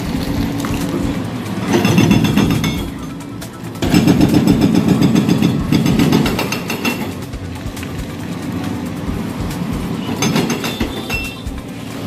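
A JCB excavator demolishing an old iron truss bridge: its engine runs steadily, with three loud stretches of rapid hammering on the steelwork, about two seconds in, from about four to six seconds, and around ten seconds.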